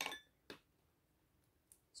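Light knocks of wooden spatulas on a glass plate: a short ringing clink at the start and a sharp click about half a second in, with faint ticks near the end.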